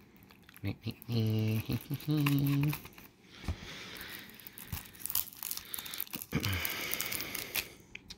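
Cellophane shrink wrap on a CD jewel case crinkling and tearing as it is cut and pulled open, with many small crackles. It is loudest near the end. A short laugh comes about a second and two seconds in.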